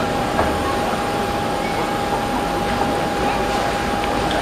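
Steady, distant roar of a Boeing 747-8F's four GEnx-2B67 turbofans as the freighter climbs away after takeoff, with a steady tone running through it.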